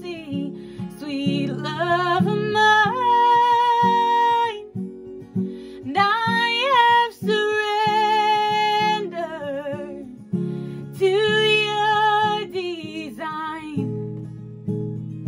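A woman singing solo in long held notes with vibrato and sliding runs, over a steady instrumental backing of sustained chords.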